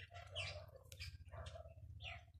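Cats eating from a bowl close to the microphone: short chewing and smacking sounds a few times a second over a low rumble.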